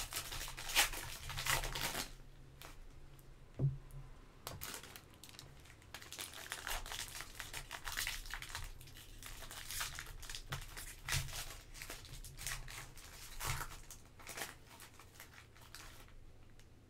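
Foil trading-card pack wrappers being torn open and crinkled by hand: an irregular run of crackles and rips, densest and loudest in the first two seconds, then coming in scattered bursts as each pack is opened.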